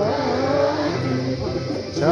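Group singing in a slow, chant-like style with musical accompaniment, in long held notes that slide in pitch.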